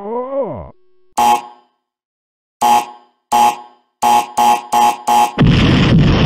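A string of eight short electronic beeps, spaced more and more closely like a countdown, runs into a loud cartoon explosion sound effect about five and a half seconds in.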